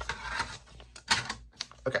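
Light clicks and rustles of a DVD disc and its paper insert being handled, the disc set down into an open disc-player tray; the loudest rustle comes a little past one second in.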